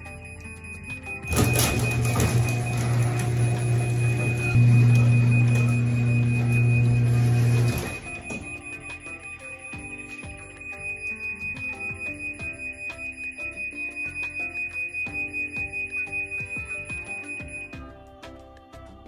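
Garage door opener running as the sectional garage door closes under remote command: a loud motor hum and rolling rumble starts about a second in, gets louder midway and stops suddenly after about six seconds. A steady high electronic tone runs through the whole time.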